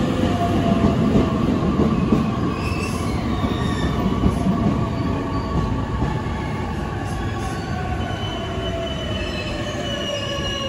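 An E657 series electric limited express train rolling into a station platform and slowing. It gives a steady rumble with thin squealing tones that slowly fall in pitch, and the sound eases off gradually as the train loses speed.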